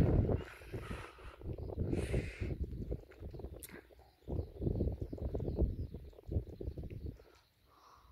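Wind buffeting the microphone in gusts: a low rumble that swells and drops irregularly, falling away briefly about four seconds in and again near the end.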